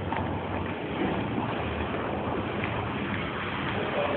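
Steady rushing background noise of a parking garage, with a few faint footsteps on concrete.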